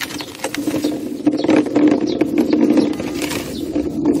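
Freshly harvested Meadowlark blueberries being stirred by hand and dropped in a plastic harvest crate, a steady patter of hard clicks as the berries knock against each other and the crate. The crisp clicking is the sign of very firm fruit.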